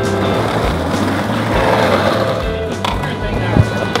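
Skateboard wheels rolling over street asphalt, a steady rough rolling noise, with guitar music underneath. A single sharp knock comes near the end.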